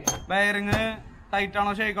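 A man talking, with one sharp metallic clink at the very start as a steel differential part is handled on a steel workbench.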